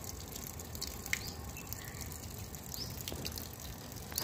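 Thin stream of water running steadily from an outdoor wall tap and splashing onto the paving below.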